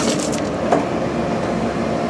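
Compact excavator running steadily, its engine and hydraulics giving an even drone. Near the start there are a few short knocks of stone as the sorting grab sets a large rock down on the ground.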